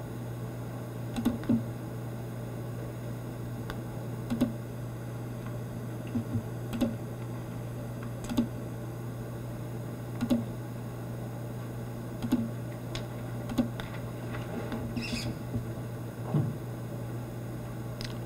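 Scattered light clicks and taps from a laptop's keys and mouse, about one every second or two, over a steady low electrical hum.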